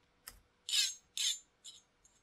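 A mouse click, then a recorded audio track playing back: short, hissy, noisy strokes, two strong ones about half a second apart and a weaker third.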